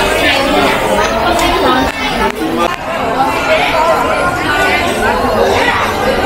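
Several people talking at once under a covered market hall roof, voices overlapping in a steady chatter.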